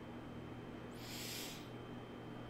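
A single short breath through the nose, about a second in and lasting under a second, over a steady low electrical hum and faint room hiss.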